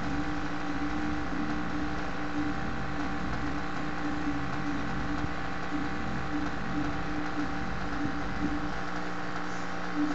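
A small motor or electrical appliance running with a steady hum made of several fixed tones.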